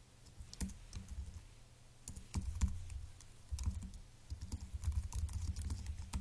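Typing on a computer keyboard: irregular keystroke clicks in quick runs, with dull thumps underneath, busier in the second half.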